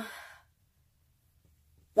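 A woman's drawn-out "um" trailing off in the first moment, then near silence: room tone.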